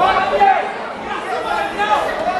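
Many voices in the audience shouting and calling out over one another, with no single voice clear, in a hall that echoes.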